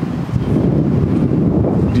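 Wind buffeting a clip-on lapel microphone, a steady low rumble.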